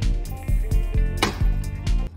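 Background music with a steady beat, about three beats a second, under held melodic notes.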